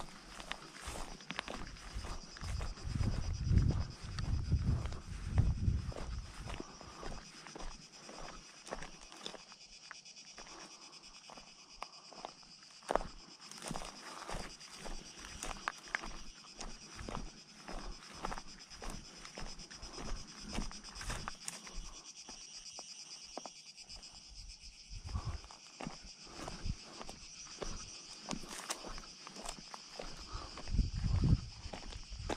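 Footsteps crunching and scuffing on loose limestone rubble along a stony track, a steady stream of small stone clicks, with some low rumbling a few seconds in. A steady high-pitched buzz runs underneath.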